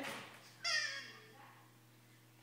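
A short, high-pitched squeal, most likely from a toddler, about half a second in, falling slightly in pitch.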